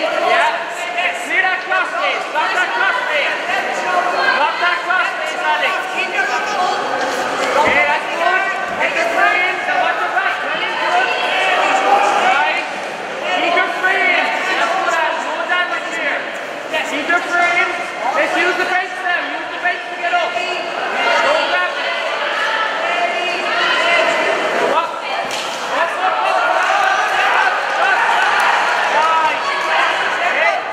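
Several voices shouting over one another in a large hall during a grappling exchange on the mat, with a few short thuds.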